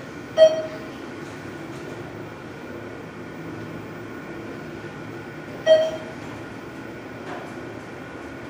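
ThyssenKrupp hydraulic elevator car travelling in its shaft with a steady hum. A short electronic chime sounds twice, about five seconds apart, the car's signal as it passes floors.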